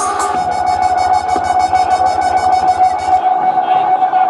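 Dub music over a sound system: a held electronic tone over fast, even ticking and a pulsing bass line, with the bass cutting out about three seconds in.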